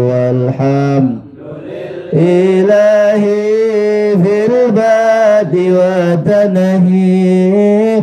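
A man chanting an Arabic salawat (blessings on the Prophet) in long held, wavering notes, with a short breath pause about a second in.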